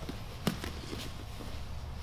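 Two grapplers shifting on a foam grappling mat: one short knock about half a second in, then faint rustles and small contact ticks over a low steady room hum.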